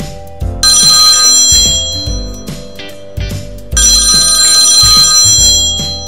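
A mobile phone ringing twice, each ring about two seconds long, over background music with a steady beat.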